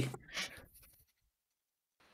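Near silence: the tail of a man's spoken question, a brief faint noise about half a second in, then dead quiet.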